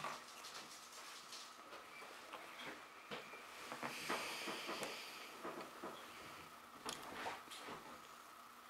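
Faint mouth sounds of someone chewing a soft marshmallow Peeps candy: small wet clicks and smacks, with a soft breathy hiss about four seconds in.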